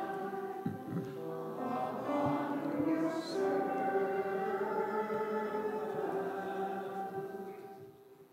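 A small church choir singing slow, held notes that die away near the end.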